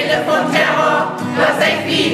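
A mixed amateur choir of men and women sings a Low German (Plattdeutsch) complaints-choir song.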